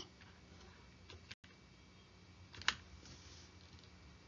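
Faint room tone with a few small clicks, the sharpest about two and a half seconds in, and a brief cut-out of all sound just before the middle.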